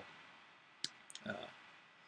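A sharp click about a second in, followed by a couple of fainter clicks, then a man's brief hesitant "uh, you know" in a quiet small room.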